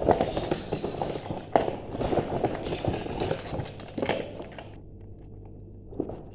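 Small die-cast toy cars clattering and rattling against each other and a plastic storage box as they are rummaged through, with a sharp knock about one and a half seconds in. The rattling stops shortly before the end.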